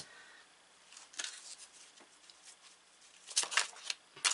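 Tarot cards handled on a wooden table: a light tap as a card is set down at the start and a few faint ticks. Near the end comes a quick flurry of card noise as the deck is picked up to be shuffled.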